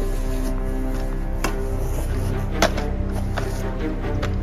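Background music of sustained, held tones, broken by two sharp knocks, about a second and a half in and again near the three-second mark, the second one louder.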